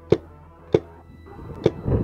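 Three single sharp paintball marker shots, spaced between half a second and a second apart. A low rustle follows near the end.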